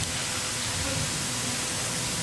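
Steady hiss of background noise on an old broadcast recording, with a faint steady tone underneath.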